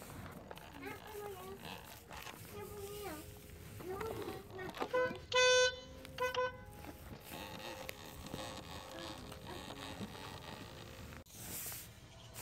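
Faint, low children's voices murmuring, broken about five seconds in by a loud, steady, horn-like beep, given twice, the second one shorter.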